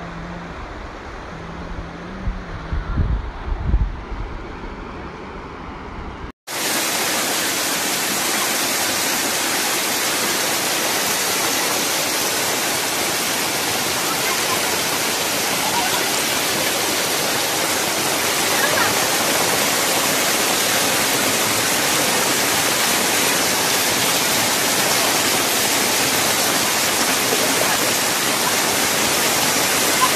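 Muddy floodwater rushing down a street: a loud, steady rush of water that starts abruptly at a cut about six seconds in. Before it, softer flowing water with low buffeting on the microphone.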